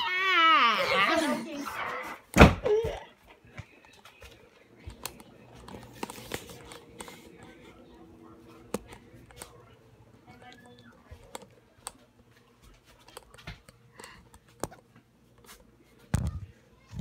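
A person's loud, wavering wail that falls in pitch over the first two seconds. About two and a half seconds in comes a single loud thud. After that there are only faint scattered knocks and clicks.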